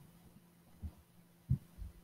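A few soft, low thumps, about four in two seconds, over a faint background.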